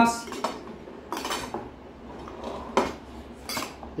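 Spoons and a serving ladle clinking and scraping against plates, a glass bowl and a steel cooking pot, in a handful of separate clinks about a second apart.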